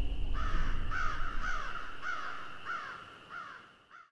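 A crow cawing in a steady run of harsh calls, about two a second, growing fainter toward the end.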